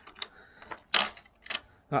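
Kick-starter of a two-stroke Honda moped being kicked over without the engine catching: a few light clicks and knocks, with one louder rasping clunk about a second in. The sound prompts the remark that it doesn't sound good.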